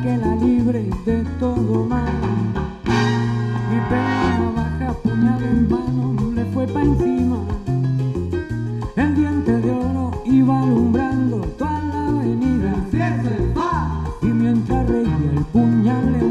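Live salsa band playing: a walking, stepping bass line under the full band, with a bright accented hit about three seconds in.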